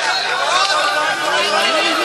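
A large crowd of many voices talking and calling out at once, overlapping rather than one speaker.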